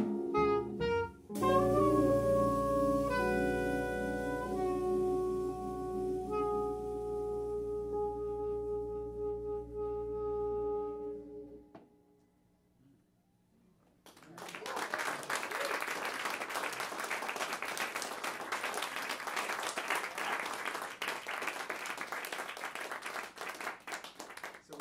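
A jazz quartet finishes a tune: a few quick saxophone notes, then a final chord held and ringing out for about ten seconds over a sustained low bass note. After a hush of about two seconds, the audience applauds.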